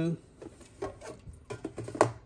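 Aluminium soda cans being set into the plastic interior of a small mini fridge: a run of light knocks and clatters, with a sharper knock at the end.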